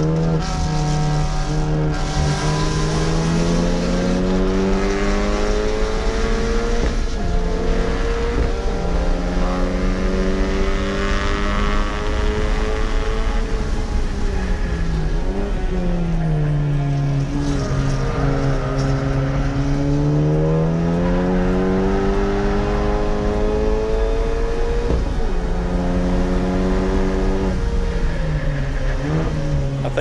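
Honda Civic Type R's turbocharged 2.0-litre four-cylinder engine on a hard track lap, revving up through the gears with a sudden drop in pitch at each upshift. About halfway through, the revs fall away slowly as it brakes for a corner, then climb again.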